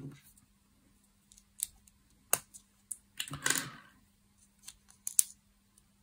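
Small plastic LEGO bricks being handled and pressed onto a half-built model: a few separate sharp clicks, with a brief rustle of pieces a little past the middle.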